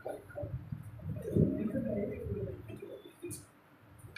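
A pigeon cooing, a low wavering call starting about a second in, over quiet classroom room noise.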